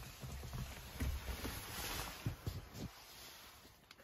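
Handling and rustling noise from a handheld camera moving around a vehicle cab, with a low rumble and several soft knocks in the middle that die down about three seconds in.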